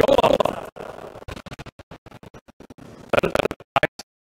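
Basketballs bouncing on a gym floor in a quick, irregular run of short knocks, with brief voices at the start and again near the end.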